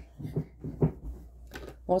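A woman's voice: a few short, faint murmurs, then she starts speaking near the end.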